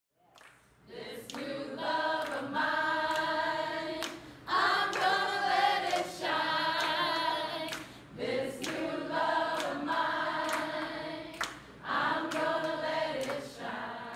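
A group of people singing together without instruments, in sung phrases a few seconds long with short breaks between them, and scattered hand claps.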